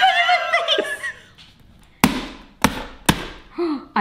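Laughter, then three hammer blows about half a second apart on walnuts sitting in a cardboard egg carton, cracking the shells.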